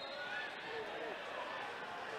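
Faint pitch-side ambience at a football match, with distant voices calling out across the field.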